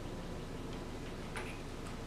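Steady room tone with a few faint, light ticks at uneven spacing in the second half.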